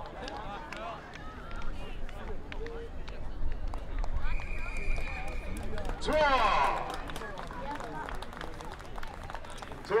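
Spectators' voices chattering and calling across a rugby pitch. A little over four seconds in comes one steady referee's whistle blast for a try, and then a PA announcer's excited call of "Try!"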